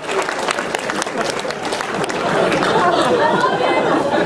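Audience laughing and chattering loudly at a joke, with scattered clapping in the first second or so.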